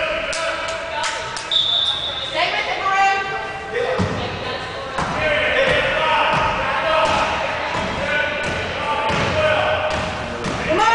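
A basketball bouncing on a hardwood gym floor as a player dribbles it up the court, a series of low thuds from about four seconds in. Spectators' voices talk and call out throughout.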